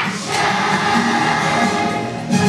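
Children's choir singing, in held notes that step from one pitch to the next.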